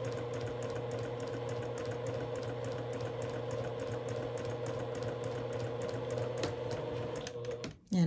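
Domestic sewing machine stitching a straight seam at a steady speed: a rapid, even needle ticking over a low motor hum. It stops shortly before the end.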